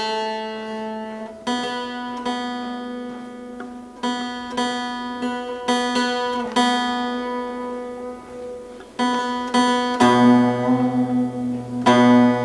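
Bağlama (long-necked Turkish saz) being plucked: a string of single notes, each struck and left to ring, over a steady open-string drone, with a lower note joining near the end.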